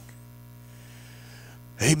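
Steady electrical mains hum in a microphone and amplifier sound system, a low unchanging drone. A man's voice cuts in near the end.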